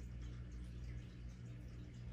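Quiet room tone: a steady low hum with a faint hiss.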